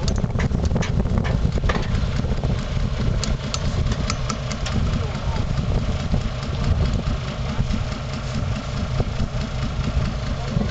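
An old truck's engine idling steadily, with a continuous low rumble.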